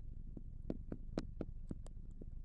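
Faint, quick ticks of a marker pen tapping and stroking on a glass lightboard as symbols are written, about three or four short strokes a second.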